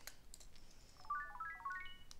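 A Sumikko Gurashi Friend virtual-pet toy's small speaker playing a quick rising run of short electronic beeps from about a second in, a jingle marking the end of a minigame. A few faint clicks come before it.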